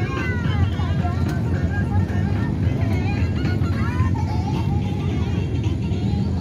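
Scattered voices and some music over a steady low rumble.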